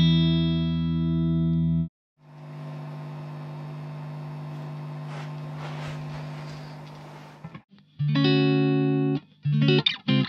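Godin LGX-SA electric guitar played through a Marshall DSL100H 100-watt valve amp head, most likely its clean setting: a chord rings and is cut off about two seconds in, a quieter sustained passage follows, and ringing chords return about eight seconds in, with short stabbed chords near the end.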